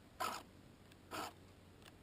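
Hand file rasping across the cutter teeth of a chainsaw chain: two short strokes about a second apart, with a third starting at the end, as the chain is sharpened.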